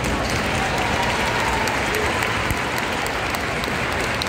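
Large audience applauding steadily, with a few voices calling out among the clapping.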